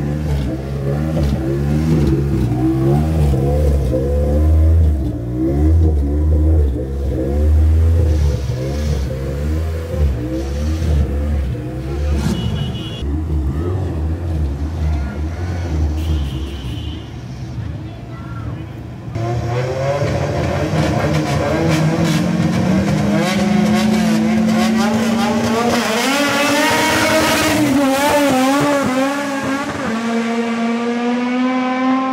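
Drag-racing car engines idling roughly and blipping at the line. About two-thirds of the way in, a sudden louder run of engine sound climbs steadily in pitch with a shift near the end, as the cars launch and accelerate away.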